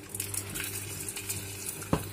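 Quinoa-and-potato patty sizzling in olive oil in a frying pan, a soft steady crackle, with one short knock near the end.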